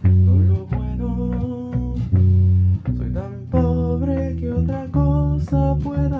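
Electric bass playing a bolero bass line in A, one held low note after another, under plucked guitar and a higher melody line.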